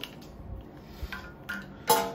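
Stainless-steel coffee grinder being handled and set down on a glass tabletop: a few faint soft knocks, then one sharp clink with a short ring near the end.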